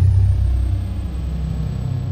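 A deep, steady rumble, an outro sound effect laid over the end screen, with a faint thin high tone slowly gliding downward.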